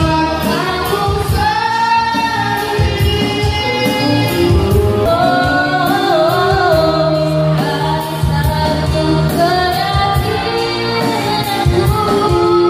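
Live amplified music through PA loudspeakers: a singer over band backing with a steady beat.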